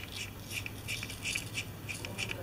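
Socket ratchet clicking in quick, uneven strokes as a bolt on a motorcycle engine's side cover is turned by hand.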